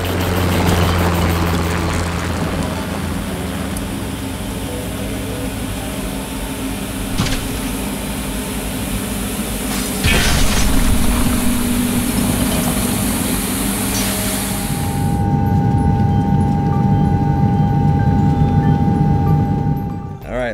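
A vehicle engine sound effect running steadily with a hiss over toy vehicles knocking down towers of plastic snap cubes, with sharp clatters about seven and ten seconds in. About fifteen seconds in the hiss stops and steady higher tones carry on.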